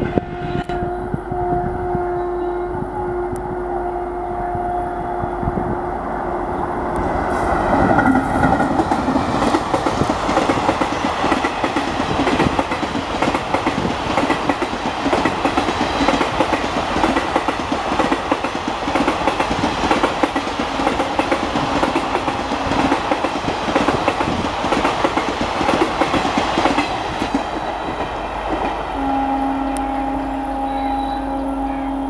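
An Indian Railways electric locomotive gives a long horn blast, broken once briefly. From about a quarter of the way in, a long passenger train passes close by with a steady rumble and clickety-clack of wheels over the rail joints. A fresh horn blast sounds near the end as the train draws away.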